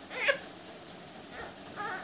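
Three-month-old infant making short, high-pitched vocal sounds: one about a quarter second in and two weaker ones near the end.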